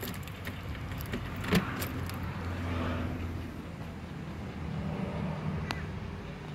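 Keys jangling and clicking at a door's deadbolt, with a sharp knock about a second and a half in as the door is worked open. A low steady hum runs underneath.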